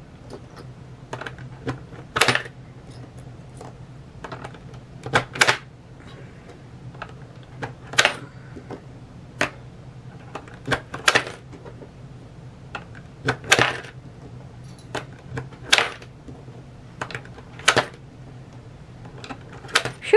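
Coins dropped one at a time into the slot of a digital coin-counting jar, each a sharp click and clink as it passes the counter and falls onto the coins inside. They come irregularly, about one a second, some in quick pairs.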